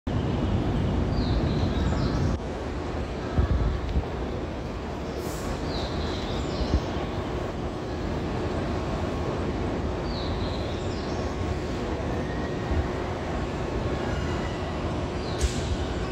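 Busy railway station platform ambience: a steady rumble of trains running on nearby tracks, louder for the first two seconds or so, with a few scattered knocks.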